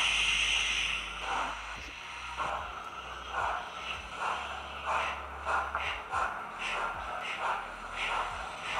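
Digital steam sound from the Hornby HM7000 sound decoders in two model steam locomotives, an A2 and a Battle of Britain class, running together as a consist: a hiss of steam as they start, then exhaust chuffs that quicken as the pair pulls away.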